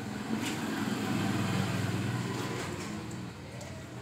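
A low rumble of background noise that swells about a second in and eases off toward the end.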